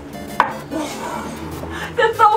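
A Chinese cleaver chops once through a piece of chicken leg onto a wooden chopping board: a single sharp chop about half a second in.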